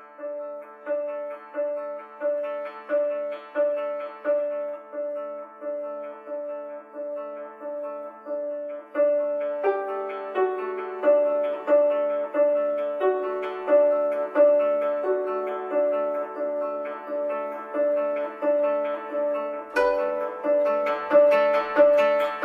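Koto, the Japanese long zither, plucked with finger picks in a steady pulse of ringing notes, about one and a half a second, growing fuller about nine seconds in. Near the end a second koto joins and the playing becomes louder and busier.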